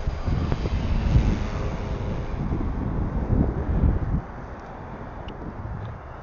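Wind buffeting the microphone in gusts: a rough, uneven low rumble that drops away about four seconds in.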